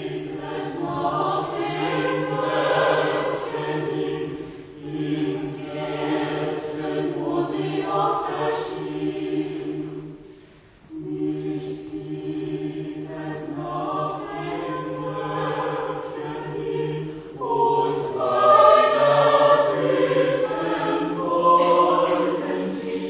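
Small mixed choir of men's and women's voices singing in parts. The voices hold long notes in phrases, breaking off briefly about halfway through before coming back in, and swell to their loudest near the end.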